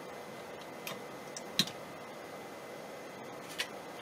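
A few small, sharp clicks from handling a fiber cleaver just after a glass fibre has been cleaved, the loudest about one and a half seconds in and another near the end.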